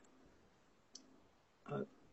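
Near silence with one faint, short click about a second in, then a brief fragment of a voice near the end.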